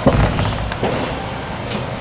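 A low thump, then the steady hum and noise of a claw-machine arcade, with a short sharp click a little before the end.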